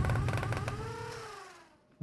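Logo-sting sound effect: a deep rumbling hit with a fast rattle and a tone that rises then slides down, fading away to almost nothing near the end.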